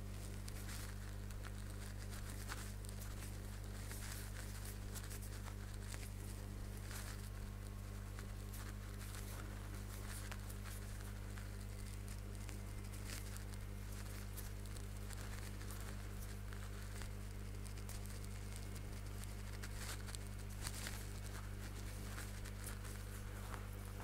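Faint rustling and light scratching of cotton thread drawn through stitches with a crochet hook, as single crochet stitches are worked, over a steady low hum.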